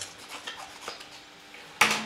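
Faint snips and rustles of scissors cutting thin card, then one sharp clack near the end as the scissors are put down on the table.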